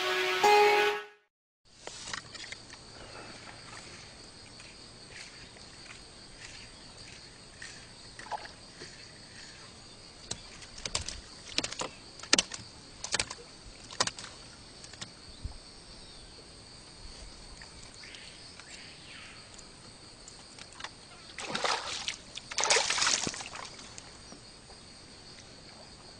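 A short music jingle, then water and boat sounds from a small wooden fishing boat on a river, over a faint steady high hiss. Scattered sharp knocks and small splashes come in the middle. Near the end there are two louder bursts of splashing as a hooked fish is pulled up out of the water.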